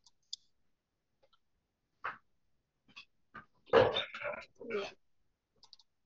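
Sharp clicks and knocks of handling at a desk, with a louder cluster of knocks and rustling about four seconds in.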